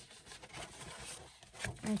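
Faint rustling and rubbing of patterned paper as a scored card blank is folded up by hand on a scoring board.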